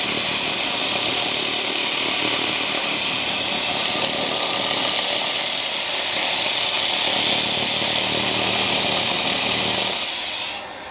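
Pulsed laser cleaner ablating carbon buildup and grime off an engine cylinder head as the beam is swept over it: a loud, steady, high hiss.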